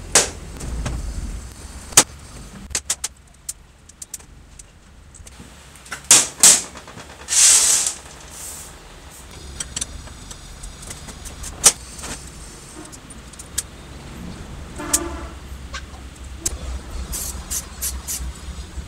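Metal clicks, clinks and short scrapes from a hex key working the blade-clamp screws of an old Hitachi electric planer's cutter drum, with the drum and loose bolts knocking on a metal workbench. A few sharp single clicks stand out, over a low steady hum.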